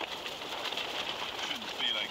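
Camping stove burner hissing steadily under a cooking pot, with scattered small crackles. Near the end comes a brief, short pitched vocal sound, like a muffled voice.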